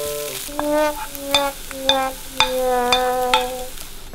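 Scrambled eggs sizzling in a frying pan while being stirred. A run of pitched background-music notes plays over it from about half a second in.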